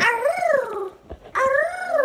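A toddler howling like a dog: two high-pitched howls of about a second each, the pitch rising and then falling in each.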